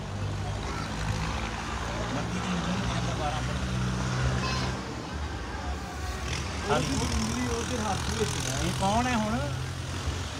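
A steady low motor hum with a slight change in its pitch pattern about halfway through. Voices talk quietly over it in the second half.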